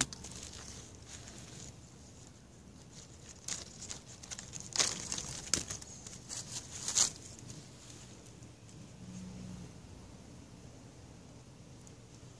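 Light rustling and crackling of handling close to the microphone, as the wicker basket and the handheld camera are carried, with a few sharper crackles about four to seven seconds in.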